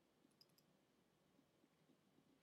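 Near silence, with a few faint computer-mouse clicks about half a second in.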